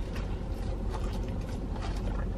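A few faint clicks and scrapes of a fork in a food container, over a steady low hum in a car cabin.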